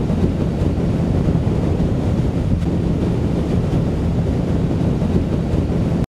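Steady low wind rumble buffeting the microphone over the drone of a boat's engine, cutting off suddenly at the end.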